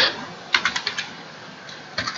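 Computer keyboard typing: a quick run of about half a dozen keystrokes about half a second in, then a single key click near the end.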